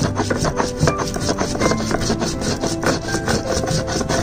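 Stone roller scraping and knocking across a flat grinding stone (sil-batta) in quick repeated strokes, crushing green chillies and garlic.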